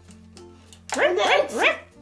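A small dog yapping several times in quick succession, starting about a second in, over soft background music.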